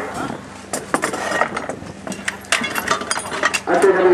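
An irregular run of sharp metallic clinks and knocks from spanners and tractor parts being handled as a Ferguson 20 tractor is assembled by hand, thickest in the second half, with voices in the background.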